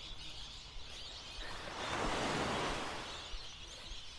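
A small wave breaking at the shoreline and washing up the sand: a soft rush that swells about halfway through and fades away.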